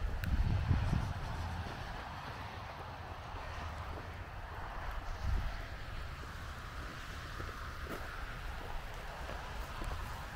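Wind buffeting the microphone, strongest in the first second, then settling into a steady outdoor hiss.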